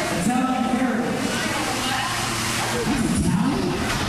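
Indistinct voices of a small crowd of spectators calling out, over steady background hubbub.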